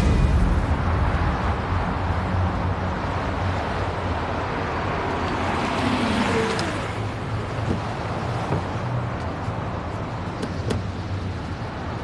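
Street traffic noise. It swells briefly about six seconds in, and there are a couple of light clicks near the end.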